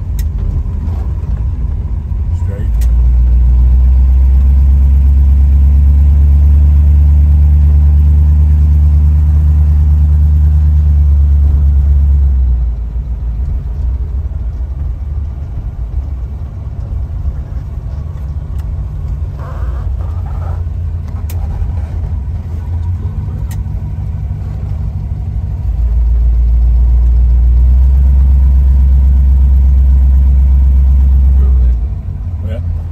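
Cabin sound of a 1954 Mercury Monterey under way, its 256 cubic-inch V8 and the road making a steady deep rumble. The rumble swells much louder about three seconds in, drops back about twelve seconds in, and swells again near the end.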